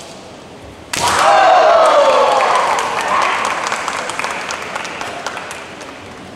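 A sharp crack of a bamboo shinai strike about a second in, met at once by loud shouts and a burst of cheering and clapping that fades away over the next few seconds.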